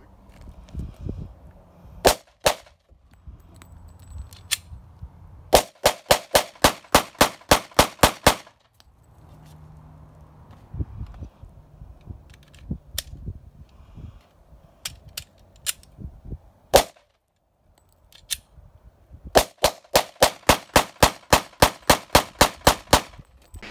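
Polymer80 PF940C-framed semi-automatic pistol being fired: two shots about two seconds in, then a fast string of about a dozen shots at roughly three a second, a few single shots spread through the middle, and another fast string starting near the end.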